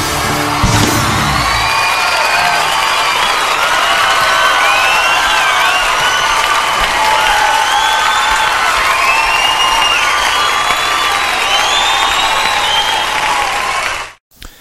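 A live concert audience applauding and cheering, with many whistles, after the band's last chord ends about a second and a half in.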